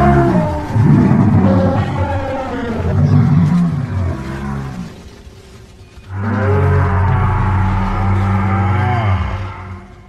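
Sound-effect chorus of many animals roaring and bellowing together, creatures crying out in panic. It comes in two waves, the second starting about six seconds in, and cuts off just before the end.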